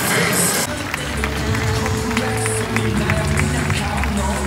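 Background music with long held low notes, which takes over from dense arena noise under a second in; a few sharp clicks sound over it.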